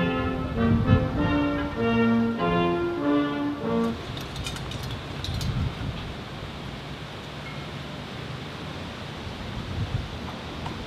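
Military brass band playing a slow passage of long held notes, which ends about four seconds in. After that there is wind noise on the microphone, with a few faint clicks.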